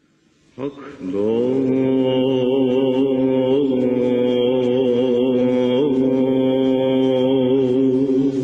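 A man's voice starts about half a second in and holds one long chanted note with a slight waver: the opening of a Mevlevi Sufi chant sung into a microphone, played back over a video call with the highs cut off.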